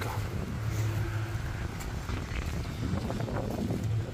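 Tractor diesel engine running steadily at low speed, a continuous low hum.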